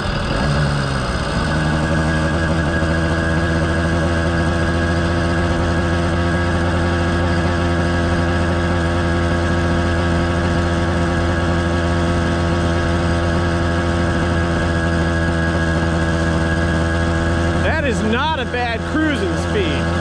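Two-stroke motorized-bicycle engine with an expansion pipe and silencer, picking up speed in the first second or so and then running at a steady high speed under throttle. A couple of little misses but hardly any four-stroking, a sign the carburetor tune is close.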